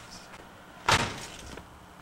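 A house's front door banging shut once, about a second in, with a brief ringing tail.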